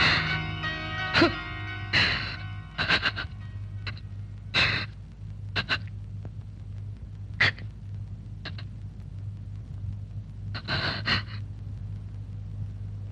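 Mournful film score held on a low sustained drone, with a man sobbing over it in short gasping breaths, the sobs bunching together near the end.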